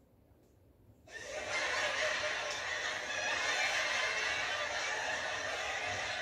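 Canned studio-audience laughter from a recorded laugh track. It starts about a second in after a short silence and holds at a steady level.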